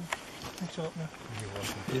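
People talking quietly and indistinctly, with a few faint clicks. Near the end a man's voice starts a question, louder.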